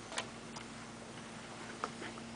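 Quiet room tone with a steady faint hum and a few faint, irregular clicks.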